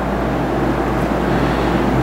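Steady low hum with a hiss of background noise, even throughout, with no distinct event.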